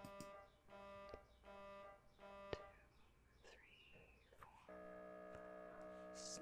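Faint MRI scanner noise during a scan. Four short buzzing pulses come about 0.7 s apart, then after a pause a steady buzz begins a little before the end.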